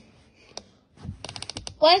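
Dryer control panel clicking under a finger: a single click, then a quick run of about eight clicks as the cycle selector dial is turned through its settings.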